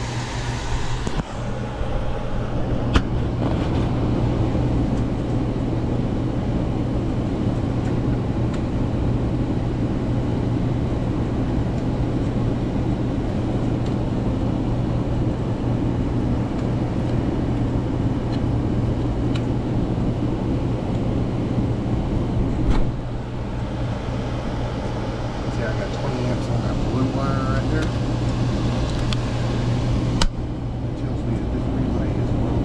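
Air-handler blower running steadily with a low electrical hum. It is kept running by a burnt heat-strip relay on the control board that has melted shut and feeds power back to the blower. A sharp click about three seconds in and another near the end come from handling at the panel.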